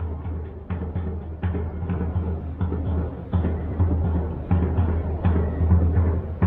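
Drum-driven background music: a run of low, booming drum strikes spaced roughly every half to three-quarters of a second.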